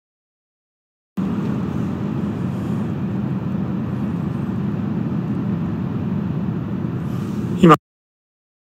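Live-stream audio breaking up on a weak mobile signal: dead silence, then about six seconds of steady muffled rumbling noise that ends in a brief louder burst and cuts off abruptly.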